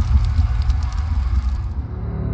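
Logo-intro sound design: a deep, steady bass drone under a crackling fire effect, which cuts off shortly before the end.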